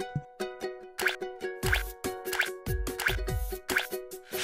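Upbeat intro jingle of short plucked-string notes over a steady beat. From about halfway in, a deeper hit with a falling bass joins roughly every two-thirds of a second.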